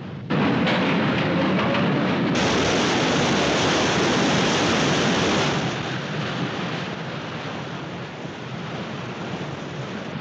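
Film sound effect of a ship's hull striking and grinding along an iceberg: a loud rushing, rumbling noise that starts suddenly about a third of a second in, grows brighter about two seconds in, and eases off to a quieter rush after about five and a half seconds.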